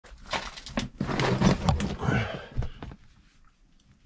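A caver scrambling over rough lava rock: scuffs and knocks of boots and hands on rock, mixed with short strained vocal sounds, for about three seconds before it stops.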